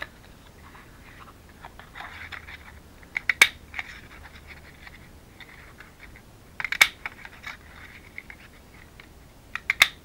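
Handheld heart-shaped paper punch squeezed through red cardstock three times, each punch a short cluster of sharp clicks, about three seconds apart, with paper rustling between.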